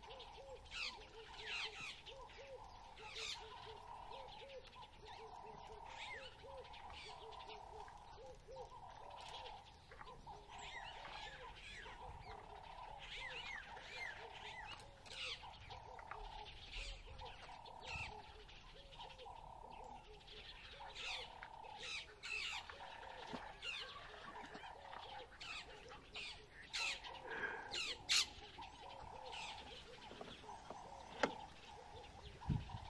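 Wild birds chirping and calling on all sides, over a lower call repeated about once a second. A few sharp clicks near the end.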